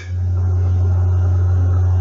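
A loud, steady low hum with no change in pitch.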